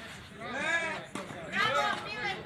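Speech: a person talking in two phrases, with one short knock a little past halfway.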